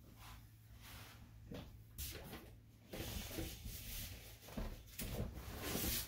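Faint handling sounds of a barber moving and reaching for his tools: soft rustling and a few light clicks and knocks, over a low steady hum.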